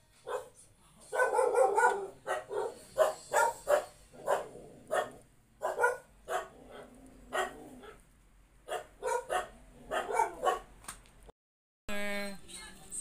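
A dog barking repeatedly in short, separate barks at an irregular pace, with a quick run of barks about a second in. It cuts off suddenly near the end.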